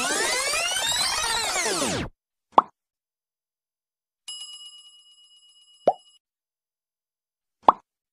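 Animation sound effects: a sweeping whoosh with rising-and-falling pitch for about two seconds, then a short pop. About four seconds in, a notification-bell ding rings and fades, followed by two more short pops, one around six seconds and one near the end.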